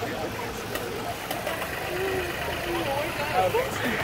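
Farm tractor engine running steadily as it tows a hayride wagon, a low even hum with faint voices over it.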